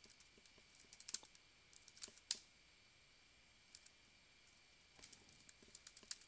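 Faint, sparse keystrokes on a computer keyboard: scattered clicks in small clusters, the loudest around one and two seconds in, with a few more near the end.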